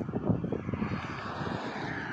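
Outdoor background noise: a rumbling hiss, with wind buffeting the phone's microphone, that gradually fades.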